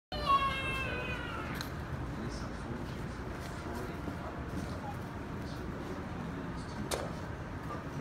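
A high-pitched, drawn-out squeal from a child's voice for about a second and a half, falling slightly in pitch, then a short click. About seven seconds in, the sharp click of a putter striking a golf ball, over steady low store hum.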